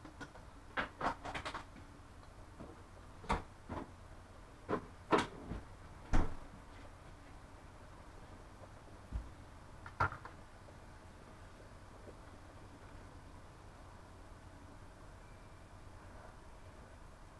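Irregular knocks and clicks of kitchen things being handled, about a dozen over the first ten seconds, with the loudest about six seconds in and a dull thump a little after nine seconds.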